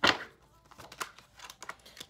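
Tarot cards being handled and shuffled: one sharp snap of the cards at the start, then a few soft clicks as the deck is worked.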